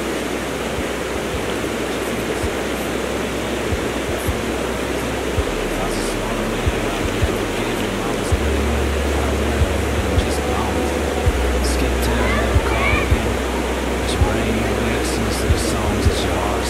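Creek water rushing steadily over shallow rocky rapids.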